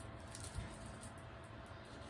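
Quiet room tone: a faint, steady hiss with no distinct event and no gunshot.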